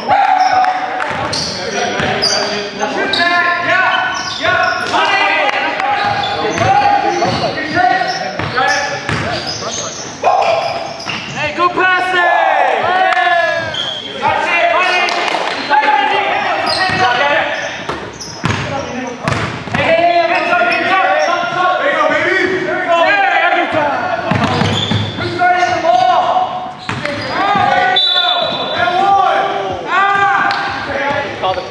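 Live basketball game in a gym: the ball bouncing on the hardwood floor, sneakers squeaking and players' short, indistinct calls, echoing in the large hall.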